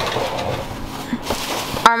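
Thin plastic produce bag rustling and crinkling as it is handled, a steady rustle that runs until a voice starts near the end.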